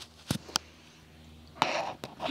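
Clip-on lavalier microphone handling noise as the mic is unclipped from a shirt and moved while still live: two sharp clicks in the first second, then a louder rustling scrape near the end.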